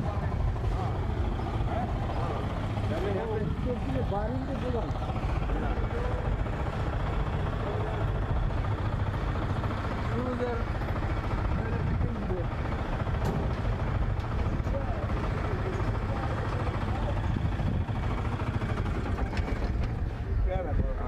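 City street ambience: a steady low rumble of traffic, with faint, indistinct voices of passersby now and then.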